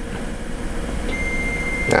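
Steady background room noise with a low hum. A thin, high electronic tone comes in about halfway through and holds, and there is a click near the end.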